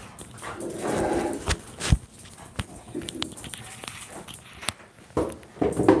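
A pet dog making short vocal sounds, with several sharp clicks and knocks from a microphone being handled.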